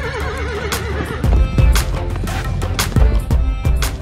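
A horse whinnies once, a quavering call lasting about the first second, over background music with a regular beat.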